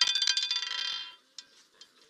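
Roulette ball clattering over the wheel's pocket separators in a fast, ringing rattle that dies away after about a second as the ball settles into a pocket. One or two faint clicks follow.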